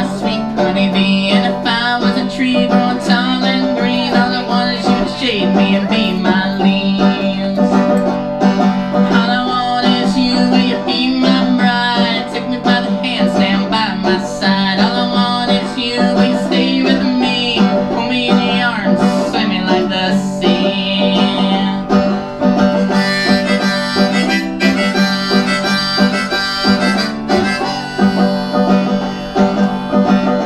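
Banjo played without singing, a steady stream of plucked notes. A wavering, bending melody line sounds higher up over the picking.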